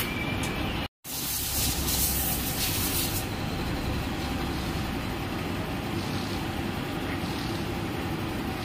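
Hydraulic press running steadily as its ram presses a bush into a Mahindra Jeeto suspension part. The sound cuts out completely for a moment about a second in.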